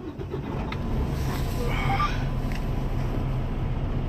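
Detroit DD15 inline-six diesel of a Freightliner Cascadia truck starting up, heard from inside the cab: the engine catches at the start, builds over about a second, then settles into a steady idle.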